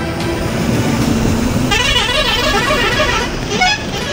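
Road traffic going by, then a vehicle's warbling multi-tone horn sounding for about two seconds, its pitch swooping up and down repeatedly.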